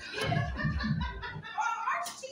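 Indistinct voices of players shouting and laughing, one voice rising in pitch near the end.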